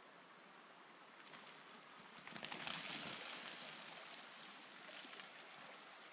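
Steady faint rush of a tall waterfall, with a swell of crackling clatter about two seconds in that fades over the next two seconds: a chunk of ice breaking off the frozen cliff face and falling.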